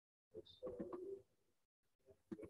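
A dove cooing faintly: one short, low call of a few notes.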